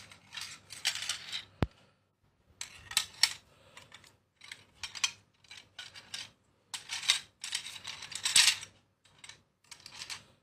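Curled wild boar tusks clicking and clattering against one another as a hand moves through a pile of them. The clicks come in irregular bunches with short pauses between, loudest a little after the middle.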